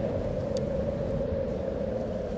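A steady low rumbling drone that holds an even level throughout.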